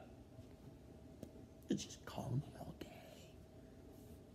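A faint, low voice speaking or whispering briefly in the middle, after a single click about a second in.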